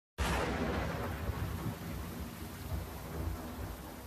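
Intro of a sped-up hip hop track: a low rumble and hiss like thunder and rain, starting abruptly and slowly fading.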